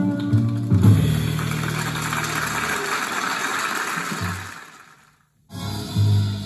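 A live jazz recording on cassette played back through DIATONE DS-A7 speakers: a tune ends and a wash of audience applause follows, fading out to a brief silence before the next piece starts near the end.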